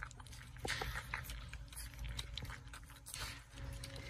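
Cane Corso puppies, four weeks old, eating wet raw ground meat from a stainless steel pan: irregular wet smacking, licking and chewing clicks from several mouths at once.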